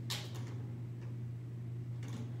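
Plastic squeeze bottle squirting water into a glass test tube: a brief soft hiss just after the start, over a steady low hum.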